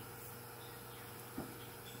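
Faint steady workshop hum, with a single soft tap about one and a half seconds in.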